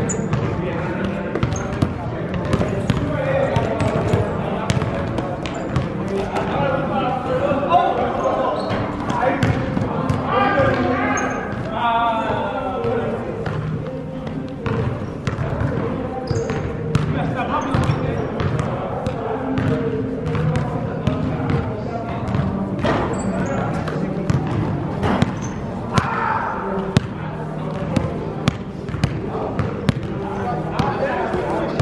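A basketball being dribbled on a hard gym floor: many sharp bounces, with players' voices, not clearly made out, calling in between.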